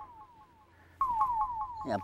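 A comic 'pressure' sound effect: a rapid string of short, falling beeps, about six a second, coming in about a second in.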